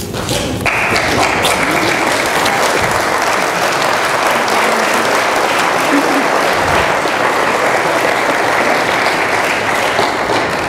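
Wedding guests applauding the bride and groom's kiss. The clapping starts abruptly less than a second in and carries on steadily.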